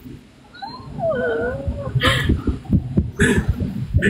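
A cat meowing once: a drawn-out cry that slides down in pitch and wavers, in the first half, followed by low muffled murmuring.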